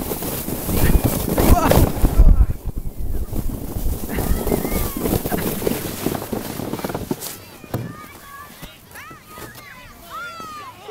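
A sled sliding down a snowy slope, with rushing wind on the microphone: loud and noisy for about seven seconds, then dying away as the ride ends. Voices call out over it.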